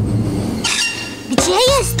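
Cartoon magic-journey sound effect: a low steady hum, then a brief hiss, and about one and a half seconds in a sudden wavering, warbling tone.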